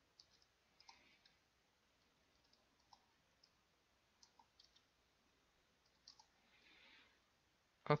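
Faint, irregular computer keyboard keystrokes, a dozen or so scattered clicks while code is typed.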